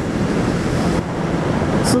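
Wind rushing over a helmet-mounted microphone on a motorcycle at highway speed, a steady noise, with the 2013 Honda CB500F's engine running steadily underneath.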